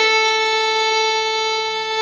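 Organ, violin and alto saxophone playing a hymn, holding one long steady note that thins out at the very end.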